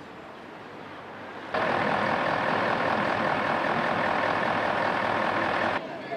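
Loud steady mechanical noise from a coach, starting abruptly about a second and a half in and cutting off suddenly near the end.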